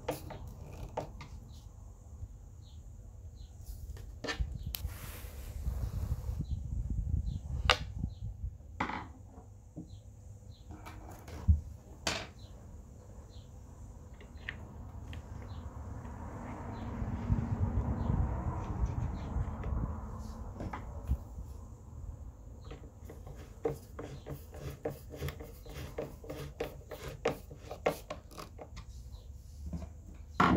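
Close-up handling noise from refitting a subwoofer driver: scattered clicks and taps of a screwdriver and fingers on the driver's frame and screws over a low handling rumble. A few seconds of rubbing come past the middle.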